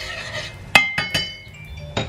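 Rice being stirred with a utensil as it toasts in butter in a pan, then three sharp, ringing clinks of the utensil against the cookware about midway.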